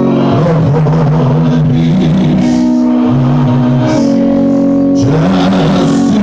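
Live gospel music: a man singing a wavering, drawn-out melody into a microphone over steady held keyboard chords.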